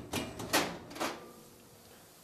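Metal pan clanking as it is taken out of the oven: three sharp metallic knocks with a brief ring, all within about the first second.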